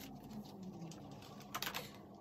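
Faint handling noise of rubber-gloved hands touching the plastic drop sheet and the rubber-banded bundle of jeans: a short cluster of crackles about one and a half seconds in, over a quiet steady background.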